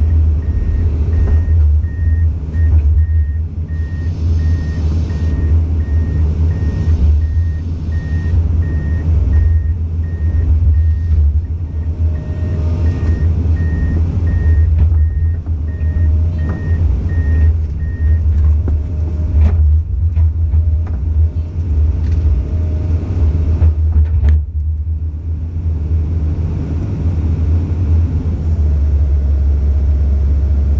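Komatsu PC200 excavator's diesel engine running with a steady low rumble, while its warning beeper sounds about twice a second and stops a little past halfway. A couple of sharp knocks follow in the second half.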